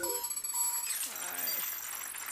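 Music stops abruptly at the start, leaving faint voices and room sound, with a thin steady tone for about the first second.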